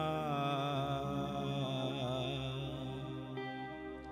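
A male singer holds a long note with a slow waver over sustained keyboard and pad chords, the sound slowly dying away; fresh steady keyboard notes come in near the end.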